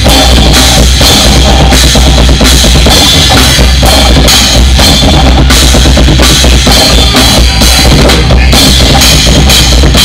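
Drum kit played hard in a progressive metal song: a dense, driving kick drum under repeated cymbal crashes, loud throughout.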